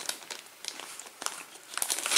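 Clear plastic wrapping of a trading-card starter pack crinkling as it is gripped and turned in the hands, in irregular crackles.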